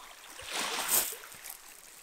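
Small lake waves washing and trickling over a pebble shore, a soft swell of water sound that rises and fades about a second in.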